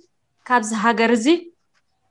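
Speech only: a woman says one short phrase of about a second, with brief pauses before and after.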